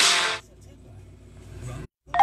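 Phone ringtone, a piano-like melody, cutting off about half a second in, the sign of an incoming call. A low steady car-cabin hum follows, then a brief dropout to silence just before the end.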